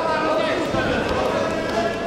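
Voices calling out in a large sports hall, with dull thuds of wrestlers' feet stepping and hands slapping as they grapple on the mat.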